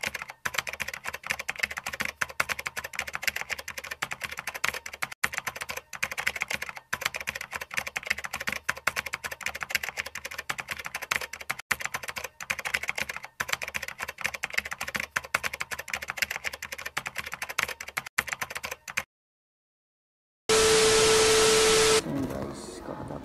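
Rapid keyboard-typing sound effect, a dense, fast run of key clicks that goes with text being typed out on screen, stopping about three seconds before the end. After a short silence, a loud burst of steady hiss with a held tone fills the last second and a half.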